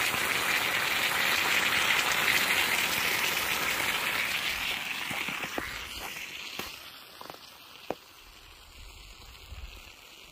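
Hot steel tin-can moulds of freshly cast metal sizzling in snow, a loud steady hiss that fades away after about five seconds. A few light crunching steps in snow follow.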